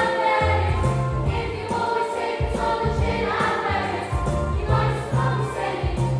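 A group of teenage voices singing a musical-theatre song together, over a recorded backing track with a bass line and a steady beat played through PA speakers.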